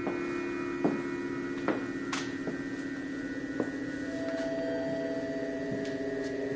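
Ambient electronic background music: a low sustained drone of held tones, with a higher tone joining about two-thirds of the way through, and a few sharp clicks scattered over it.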